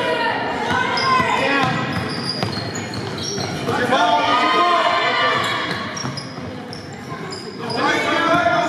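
A basketball bouncing on a hardwood gym floor as players dribble it up the court, with scattered short high squeaks from sneakers on the floor.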